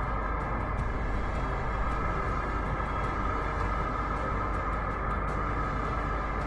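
Numatic George canister vacuum cleaner running steadily, its bare metal wand sucking up a clump of loose fur, with a faint light ticking over the even suction noise.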